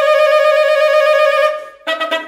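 Solo alto saxophone holding one long note that swells slightly louder and breaks off about a second and a half in, then starting a quick run of short, separate notes just before the end.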